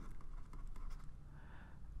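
Faint scratching of a pen writing a short word by hand, a few light strokes.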